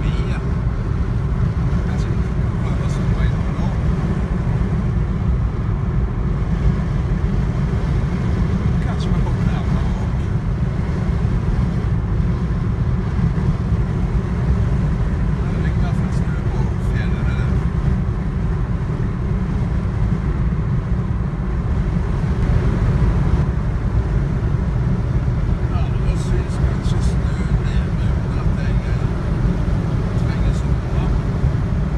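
Steady low rumble of tyre, wind and engine noise heard inside a car cruising at motorway speed.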